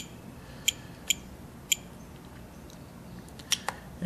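Spektrum radio-control transmitter giving four short, high beeps in the first two seconds as its roller selector is turned to change a flap-position value, followed by two quick clicks near the end.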